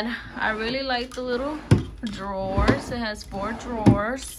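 A young child babbling and vocalizing without clear words, broken by three sharp knocks, about halfway through and near the end, from the white desk drawers being pushed and pulled.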